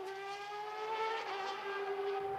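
Formula 1 racing car engine at high revs, a steady high-pitched note rising slightly in pitch.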